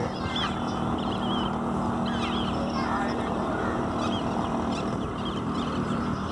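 A steady low engine hum under a broad rushing noise, easing off briefly near the end, with short bird chirps and calls over it.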